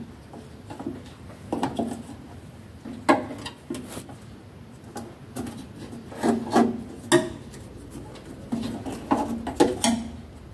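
Irregular clicks, knocks and scrapes of a screwdriver and hands working the terminal screws and cables of a metal changeover switch, with a few sharper knocks scattered through.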